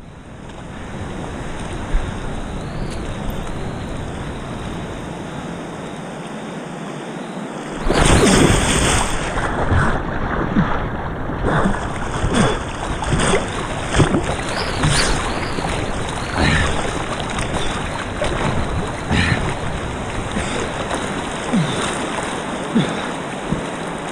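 Whitewater rapids rushing steadily. About eight seconds in, water starts splashing close around the microphone, with many short splashes through the rest of the stretch.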